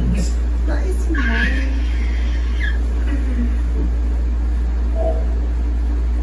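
A steady low hum, with faint, soft speech over it a few times.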